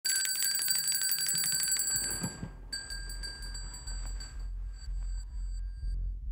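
An electric bell ringing in a rapid trill: a loud ring for about two seconds, then after a short break a fainter ring until the man speaks, with a low hum underneath.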